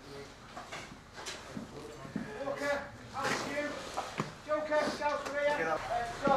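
Indistinct men's voices talking from a little over two seconds in, with a few sharp knocks and clicks in the first seconds.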